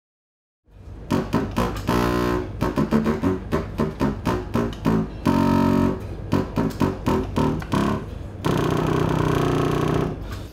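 Baroque contrabassoon playing a quick run of short, separated deep notes starting about a second in, with a brief held note midway and a long sustained note near the end.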